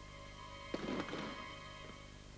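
Tense television drama score with held chords, joined about three-quarters of a second in by a sudden louder hit that fades within about half a second.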